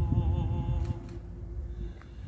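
A male singing voice holding a wavering note that fades out in the first second, leaving a short pause between sung phrases with a low rumble underneath.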